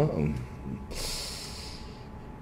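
A man's single breath, a hissy intake or puff through the nose or mouth lasting about a second, between phrases of speech.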